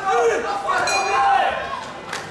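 A ring bell strikes briefly about a second in, a short metallic ring that signals the end of the round. Voices in the hall carry on over it.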